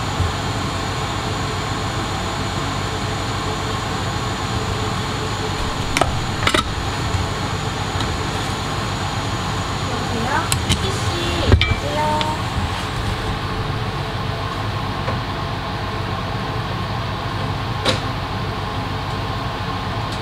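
Steady whir of the fans on an electronics rework bench (fume extractor and rework station). A few sharp clicks and taps of tools on the board come about six, eleven and eighteen seconds in.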